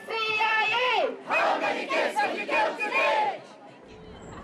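Raised voices of protesters chanting: a long, high held call that falls away about a second in, then several drawn-out calls rising and falling, which stop shortly before the end.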